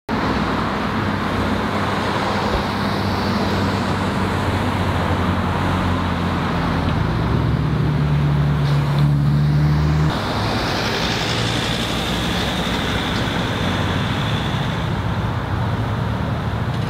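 Street traffic and idling vehicle engines, a steady low hum with road noise; the strongest engine drone drops away abruptly about ten seconds in.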